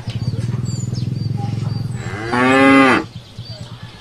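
Water buffalo lowing: a low, pulsing rumble for about two seconds, then a loud, higher-pitched bellow lasting under a second.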